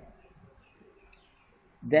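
A single short, sharp click about a second in, against faint room tone, with the man's voice starting again near the end.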